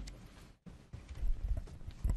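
A few irregular low thumps and knocks, close to a meeting-room microphone.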